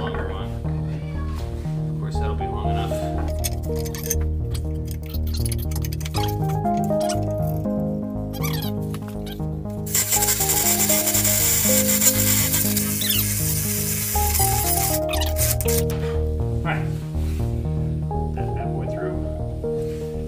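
Instrumental background music with a stepping melody throughout. About ten seconds in, a cordless drill bores through a wooden two-by-four for about five seconds, louder than the music, then stops.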